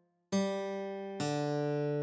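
A slow guitar melody from a tab playback at half speed: after a brief silence, one note sounds about a third of a second in, then a lower note about a second in that rings on, the G and tied D of the tab.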